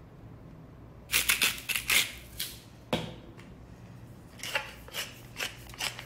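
Wooden pepper mill being twisted by hand, grinding pepper in a run of short rasping strokes, about two or three a second, over the last part. Before that, about a second in, comes a burst of clattering and rasping, and a single click follows.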